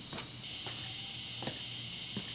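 A few soft footsteps on a concrete garage floor over a faint, steady high-pitched whine that sets in about half a second in.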